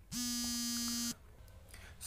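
A steady buzzing tone at one unchanging pitch, lasting about a second and stopping abruptly.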